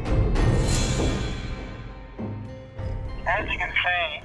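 Dramatic background music opening with a deep drum-like hit that fades away over a couple of seconds. Near the end a man starts speaking through a breathing-apparatus face mask, his voice muffled and narrow.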